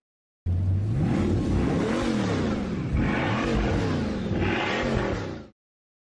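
Sound effect of a motor running, its pitch rising and falling several times. It starts about half a second in and cuts off suddenly about half a second before the end.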